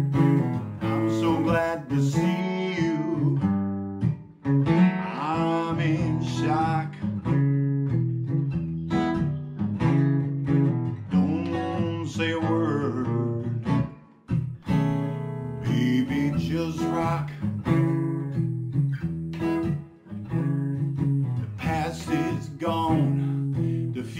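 Acoustic guitar playing an instrumental passage of a blues song, with no lyrics sung.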